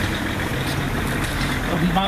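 A motor vehicle engine running steadily amid street noise. A man's voice starts near the end.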